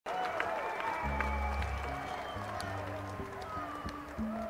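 A live band starts a song in a concert audience recording: held low bass and guitar notes come in about a second in, over audience cheering and scattered clapping.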